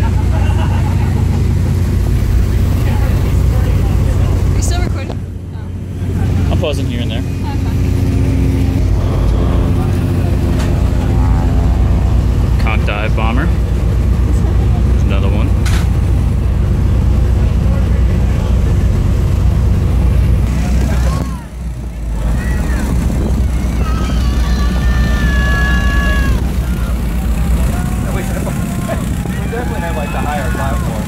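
Boat engine running steadily, with wind on the microphone and scattered voices over it. The sound dips out briefly twice.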